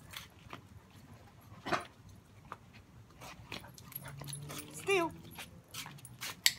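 Blue Great Dane puppy giving a short whimper near the end, with scattered light taps and one sharper knock about two seconds in.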